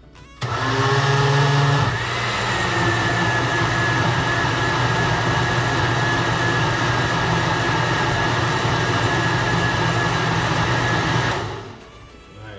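Countertop blender motor switching on about half a second in and running steadily while it blends a liquid rice punch mixture, then switching off just before the end.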